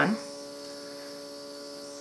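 Small electric airbrush compressor running with a steady hum.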